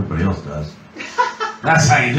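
Voices talking with light chuckling; a louder burst of voice near the end.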